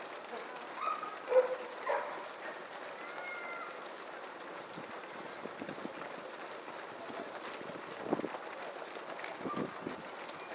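Footsteps of a large crowd of runners on a wet road, a steady shuffling noise with faint individual footfalls. Brief shouts and calls from voices in the first few seconds.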